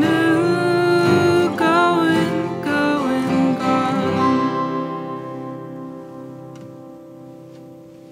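A small band led by acoustic guitars plays the last bars of a song. They land on a final chord about four seconds in, which rings out and fades away.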